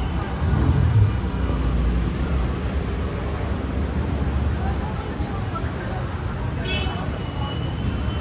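A car and a motorbike driving slowly past at close range on a street: a low engine and tyre rumble that peaks about a second in and fades over the next few seconds, over steady street noise.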